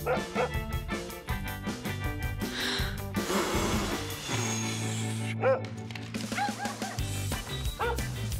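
Upbeat cartoon background music with cartoon dogs giving several short barks and yips in the second half. A small whistle is blown about four seconds in.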